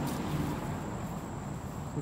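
Quiet yard background: low, even background noise with a thin, steady high tone, and no distinct event.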